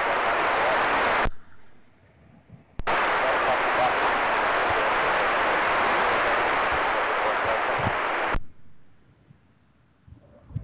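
Air-band VHF radio scanner static: a loud hiss that cuts off sharply about a second in, snaps back on about three seconds in and runs for about five and a half seconds before the squelch shuts it off.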